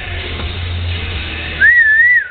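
Background music with a steady bass. About one and a half seconds in, a person in the audience starts a loud, wavering whistle that rises and falls in pitch, cheering on the posing competitors.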